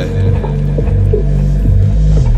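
Liquid drum and bass music in a bass-led passage: a deep bass line in held notes that step in pitch, with little percussion above it.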